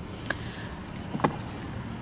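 Faint steady background noise with two small clicks, one about a third of a second in and one just past a second in.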